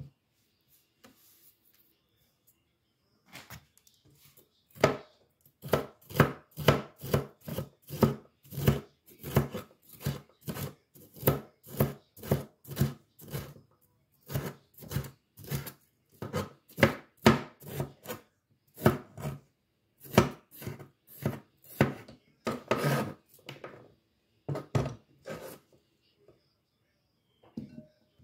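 Kitchen knife chopping green bell pepper on a cutting board: a steady run of knocks, about two to three a second, starting a few seconds in, with a couple of short pauses.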